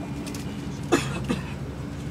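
Steady drone of an airliner cabin, a low rumble with a constant hum. A couple of short vocal sounds come about a second in.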